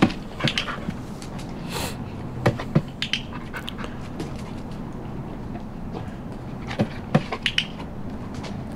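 A German Shepherd moving about on brick paving beside a training box: scattered sharp ticks and taps, some in quick pairs, over a faint steady low hum.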